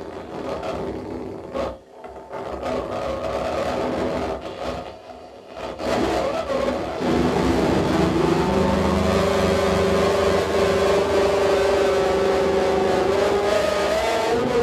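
Amplified glass played with the mouth as a noise instrument: choppy scraping and screeching bursts with short breaks, then about six seconds in it settles into a loud, steady droning tone with a stack of overtones.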